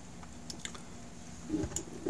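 Faint handling noise from a 3.5-inch hard drive being lifted and its power cable handled on a desk: a few light clicks, then a soft knock near the end, over a low steady hum.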